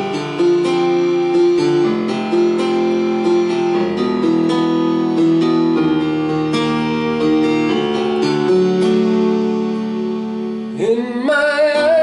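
Electronic keyboard on a piano sound playing slow, sustained chords and a melody. About eleven seconds in, a man's voice starts singing over it with a wavering tone.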